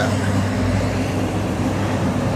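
Road traffic noise on a busy multi-lane boulevard, a steady rush with a low steady hum underneath, swelling slightly about half a second in as a vehicle passes.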